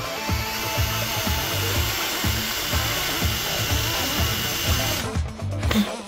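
Power drill with a twist bit boring into a wooden board, a steady cutting and motor noise that stops suddenly about five seconds in. Background music with a steady beat runs underneath.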